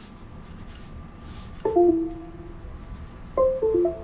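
Two short runs of pitched beeps from the Beta95X V3 quadcopter's brushless motors, each stepping down in pitch, the second about two seconds after the first. These are tones played through the motor windings by the ESC.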